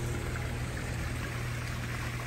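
Water from a pool's sheet waterfall and spitter fountains splashing steadily into a swimming pool, heard as an even rushing, over a steady low hum.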